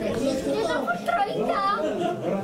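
People talking, several voices overlapping in casual chatter.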